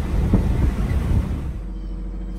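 Road and wind noise inside the cab of an electric-converted Ford F-150 driving at speed, with no engine sound. About one and a half seconds in, it cuts off abruptly to a quieter steady low hum.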